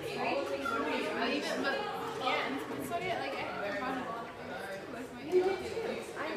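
Indistinct chatter of several people talking at once in a large room, with no single voice standing out.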